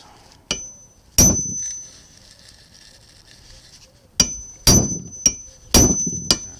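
Hammer striking a single-bevel chisel on a rivet head, cutting the head away to separate a ratchet pawl from its casting. A light tap comes first, then a heavy blow about a second in, and after a pause a run of four blows about half a second apart, each leaving a high ringing.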